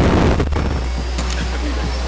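Electric motors and propellers of radio-controlled model aircraft running, a steady noisy whir with a faint high whine.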